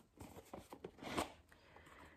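Faint rustling and a few soft knocks as a rigid cardboard perfume gift box is opened by hand. The loudest knock comes about a second in.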